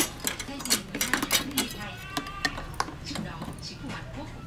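Clicks and clatter of kitchen utensils, tongs and plastic food containers being handled on a tabletop, dense in the first two seconds and sparser after.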